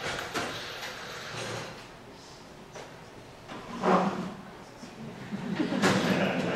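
A chair being moved and set in place beside a grand piano: a few scraping and knocking sounds on the stage floor, the strongest about four seconds in and near the end.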